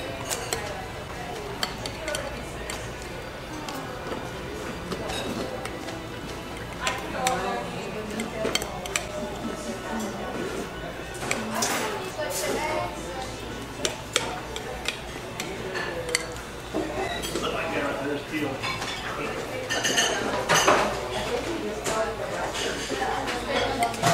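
Metal spoons clinking and scraping against glass sundae bowls during fast eating, with scattered sharp clinks, some louder around the middle and near the end. Music and voices are heard faintly underneath.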